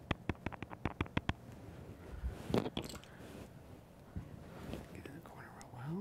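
A fingertip patting concealer onto the skin around the eye: a quick run of about ten soft taps in the first second and a half, then a louder rustle about two and a half seconds in.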